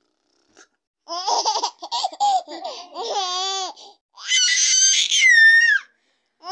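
A baby laughing in a run of high-pitched calls starting about a second in, ending in a longer, shriller squeal.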